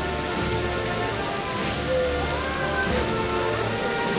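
Procession band playing a slow processional march, with sustained notes and low bass notes, over a steady rushing noise.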